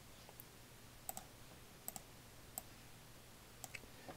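A few faint, sparse clicks from a computer keyboard and mouse while a plus object is entered in the patch, about six in four seconds, over a low steady hum.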